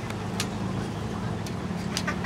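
Steady low hum of a running motor, with a few sharp clicks.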